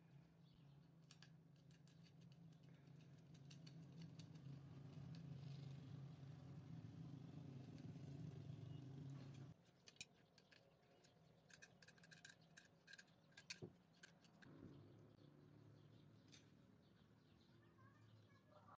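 Near silence: faint clicks and small metal clinks from pliers and a nut being worked on a battery jumper-cable clamp, most of them in the second half, over a low hum that stops about halfway through.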